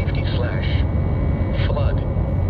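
The NOAA Weather Radio's synthesized voice reading the broadcast in short phrases, played through a radio, over a steady low rumble.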